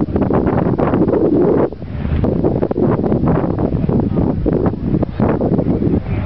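Strong wind buffeting the camera's microphone: a loud, uneven rumble that rises and falls in gusts, with short lulls about two seconds in and again near the end.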